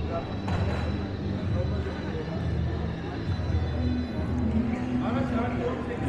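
Background chatter of a busy indoor fair: distant voices of stallholders and shoppers over a steady low hum.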